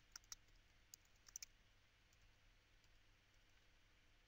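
Faint keystrokes on a computer keyboard as a password is typed: a handful of soft clicks in the first second and a half, then near silence.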